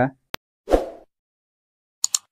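A single sharp click, then about a third of a second later a short pop that fades quickly. These are video-editing sound effects at the transition to the end card.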